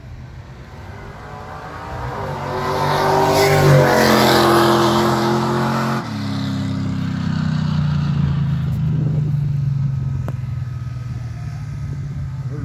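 A drag racing car's engine making a pass down the strip. It grows loud over a couple of seconds and is loudest in the middle, dips suddenly about six seconds in, then runs on as a lower, steady drone that fades as the car heads away. The onlookers take it for a solo bye run.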